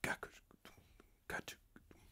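A man making soft whispered, percussive mouth sounds, a handful of short hissy clicks, imitating the rhythm of the delay repeats.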